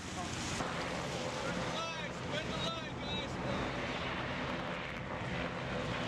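Landing craft engines running in a steady low drone, with wind on the microphone. Several voices call out briefly about two to three seconds in.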